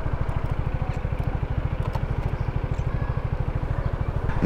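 Zontes 350E scooter's single-cylinder engine idling while stopped, a steady, even, rapid low pulse.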